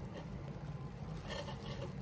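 Steady low background hum, with faint crinkling of plastic wrap being gathered up over a cup in the second half.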